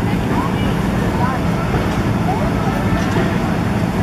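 Steady low hum of an inflatable bounce house's electric air blower running continuously to keep it inflated, with children's voices calling out briefly over it.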